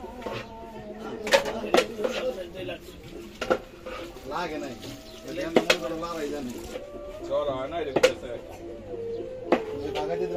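Several people talking in the background, with sharp clicks or knocks every second or two. A few of the knocks are louder than the voices.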